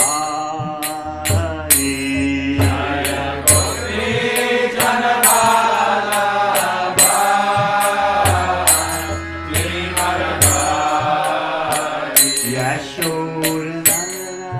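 A man chanting a devotional mantra in long, held and sliding notes, over a steady beat of hand cymbals (kartals) and low sustained notes beneath.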